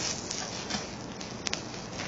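Steady background hiss with one faint click about one and a half seconds in.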